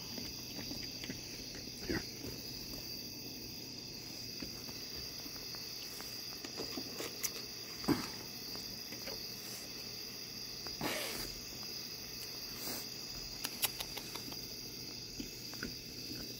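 Steady high chirring of crickets in the night, with a few short scrapes and clicks scattered through, the most prominent about halfway and two-thirds of the way in.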